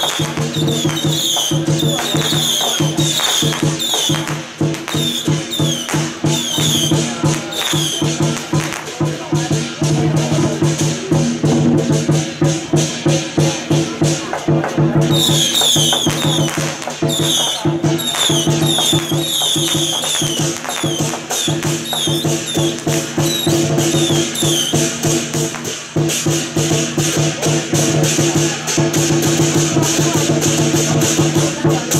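Loud temple-procession music: a fast, even beat of percussion strikes over a steady held tone, playing without a break.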